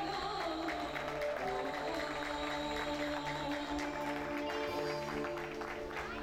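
Live band playing an instrumental passage on keyboards and guitars, with long held melody notes over a steady accompaniment.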